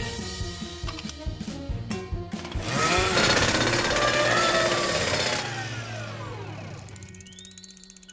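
Cartoon sound effect of a power screwdriver at work: a fast rattling buzz for the first couple of seconds, then a louder whirring swirl that fades away, over background music. A short rising tone comes near the end, as the wheel is fixed in place.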